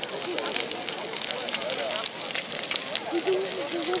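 A bonfire of dry brushwood crackling as it catches, with many sharp snaps, over the chatter of a crowd.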